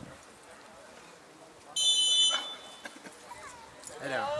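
Referee's whistle: one short, steady, high-pitched blast about two seconds in, the signal that the penalty may be taken. Faint crowd voices run around it.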